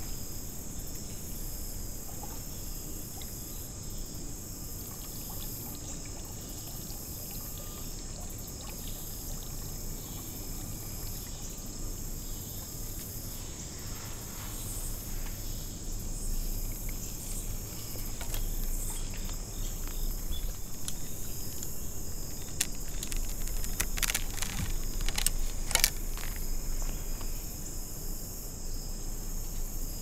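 Crickets and other insects calling steadily in a high-pitched chorus, with a few sharp clicks about three-quarters of the way through.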